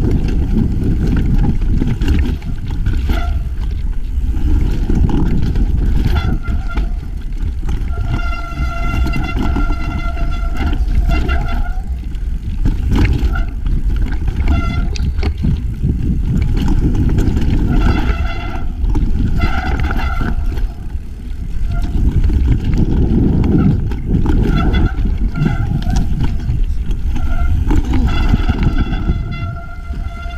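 Mountain bike ridden fast down a rocky dirt trail, heard from a rider-mounted action camera: a steady rush of wind and tyre noise with knocks and rattles as the bike rolls over rock. A high-pitched whine from the bike comes and goes several times.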